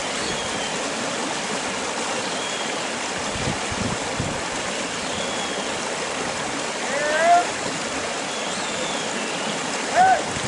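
Steady wind rushing across the microphone. A huntaway dog working sheep in a straight hunt gives two loud, short barks, the first about seven seconds in and the second at the very end.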